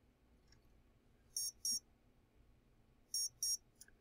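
A quadcopter motor's speed controller sounding short, high-pitched double beeps, two pairs about two seconds apart. This beep beep is the error signal that the supply voltage is wrong, here 5 volts, which is too low.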